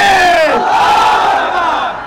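Protest slogan shouted by a man into a handheld microphone and answered by a crowd of men chanting it back in unison; the shout falls in pitch at the start and the massed voices die away near the end.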